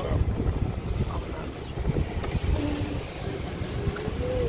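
Wind buffeting the microphone through an open car window, an uneven low rumble.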